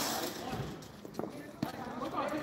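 The ring of a cricket bat striking the ball fades away at the start, then players' voices call across the ground, with a couple of short sharp knocks about midway.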